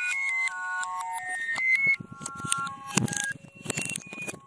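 Electronic logo sting: a cascade of overlapping steady beeping tones that step between pitches for about two seconds, then a scatter of glitchy clicks and ticks.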